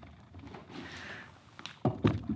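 Quiet indoor room tone with faint scuffing and rustling, then a single sharp knock shortly before the end.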